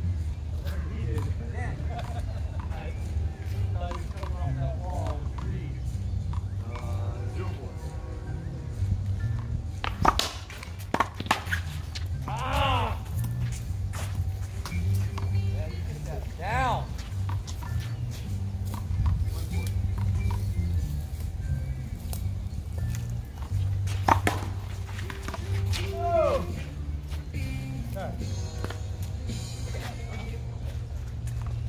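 An outdoor one-wall racquetball rally: a racquetball smacks off racquets and the concrete wall in a few sharp cracks, a pair close together about a third of the way in and another about two-thirds in. Voices and music sit behind the hits.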